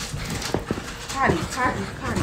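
Excited pet dogs yelping and whining at someone's arrival, a couple of short pitch-bending cries in the second half, after two sharp clicks about half a second in.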